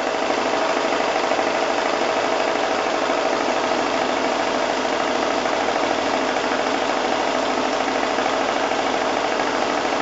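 Domestic sewing machine running steadily at speed, stitching a small, dense free-motion meander through a quilted placemat.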